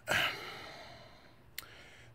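A man's exhaled sigh: a breathy out-breath that fades away over about a second. A single short click follows near the end.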